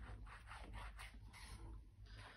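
Faint rubbing of a wet-glue bottle's applicator tip drawn along tape on a card topper, in short strokes.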